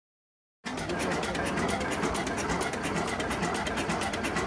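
Schlüter two-cylinder stationary diesel engine running steadily, with a rapid, even knocking beat of about ten beats a second. The sound cuts in abruptly just after the start.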